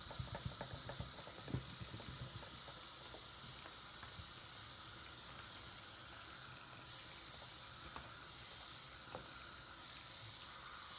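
Soap foam in a sink fizzing and crackling under a running tap, as hands squeeze and squish a soapy sponge in the suds. A quick run of wet squelches comes in the first couple of seconds, then mostly the steady fizzing hiss with two faint clicks near the end.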